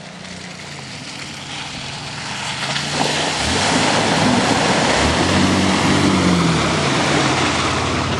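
4x4 Dodge Caravan minivan's engine revving as it drives through a mud hole, with the wash of tyres churning mud and water. The noise builds over the first few seconds, and the engine note rises and falls twice in the second half.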